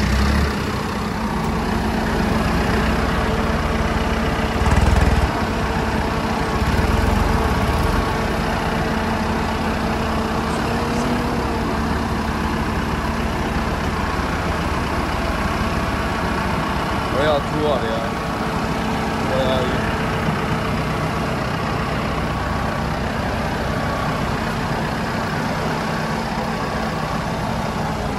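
Deutz-Fahr 6135C Warrior tractor's diesel engine idling steadily, with a couple of low bumps about 5 and 7 seconds in.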